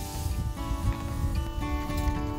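Background music: plucked acoustic guitar notes ringing one after another.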